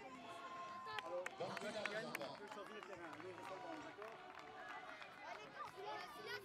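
Many children's voices talking and calling out over one another, with a few sharp clicks about one to two seconds in.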